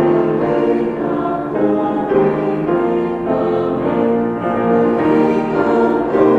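Church choir of mixed women's and men's voices singing together in long held notes.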